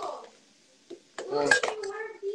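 A few short clinks and knocks of dishes and cutlery on a kitchen counter, with a man's voice near the end.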